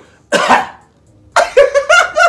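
A man imitating a cough: one short, harsh cough about a third of a second in, acting out a stranger coughing.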